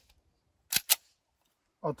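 CZ 75B pistol's slide being racked by hand: two sharp metallic clicks in quick succession about a second in, as the slide goes back and snaps forward to chamber a round.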